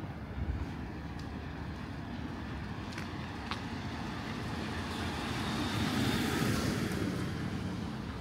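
A car drives up a narrow street and passes close by, its engine and tyre noise swelling to a peak about six seconds in and then fading.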